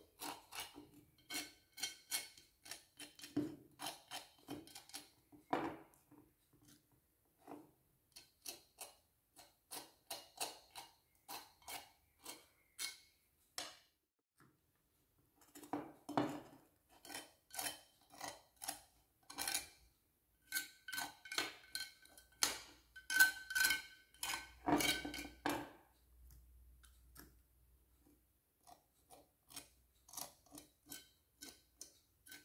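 A small tool clicking and tapping lightly against a painted glass bottle as gold paste is dabbed on: quick irregular taps, a few a second. The taps come thickest and loudest a little past two thirds of the way in, with a brief faint squeak.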